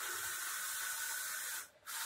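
Roland SP-540V VersaCAMM wide-format inkjet printer/cutter with its print-head carriage sweeping across the media in a pass, a steady hissing whir with a faint high whine. It stops briefly near the end as the carriage turns around, then the next pass starts: the machine is printing the alignment marks for a later contour cut.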